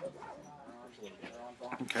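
Faint background voices murmuring, followed near the end by a man saying "okay" close to the microphone.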